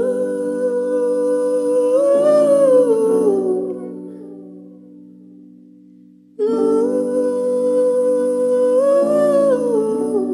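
Slow live ballad: a wordless hummed vocal phrase, a held note that swells up and falls back, sung twice over sustained chords, each time fading away.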